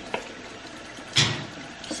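Kitchen tap running steadily into the sink during hand dish-washing, with one brief louder noise about a second in.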